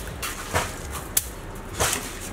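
Stick broom flicking wet red mud slurry onto a brick rocket stove: three short splattering swishes, a little over half a second apart.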